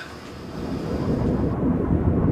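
A deep, low rumble that swells up gradually after a brief lull, a documentary sound effect for a black hole.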